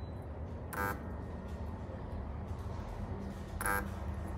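FNIRSI SWM-10 handheld battery spot welder firing twice through copper electrode pens, welding a nickel strip onto a cylindrical lithium cell. Each weld is a short, sharp snap with a brief beep, about three seconds apart.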